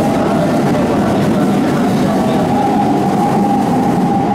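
A Keikyū Line train running out of the station past the platform, giving a steady rumble of wheels on rail. A thin whine comes in about halfway through, and the sound has mostly passed by the end.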